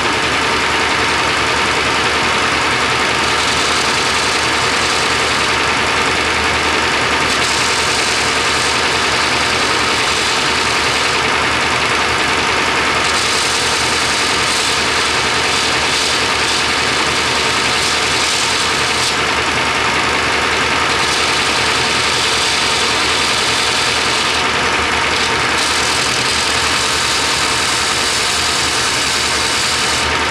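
Belt grinder running steadily while a damascus knife blade is ground against the belt to take off drying marks. The high grinding hiss comes and goes every few seconds as the blade is pressed on and eased off.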